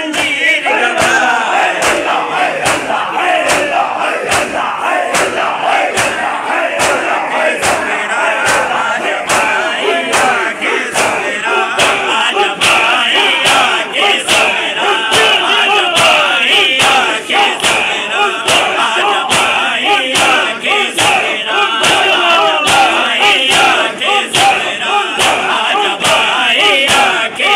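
A crowd of bare-chested men doing matam: many hands slapping chests together in a steady rhythm of about two strokes a second. Loud massed voices shout and chant along.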